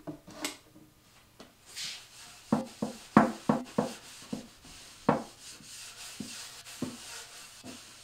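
A paper towel rubbing over the oil-wet plywood top of a Meinl bongo cajon, wiping off excess mineral oil. A run of dull knocks on the hollow drum comes as the hand works across it, most of them between about two and five seconds in.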